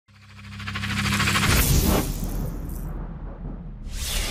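Animated logo intro sting: a swelling whoosh builds over the first second and a half into a low boom, which fades out. A second whoosh bursts in near the end.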